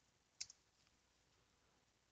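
Near silence: room tone, broken by one faint, short click a little under half a second in, with a weaker tick right after it.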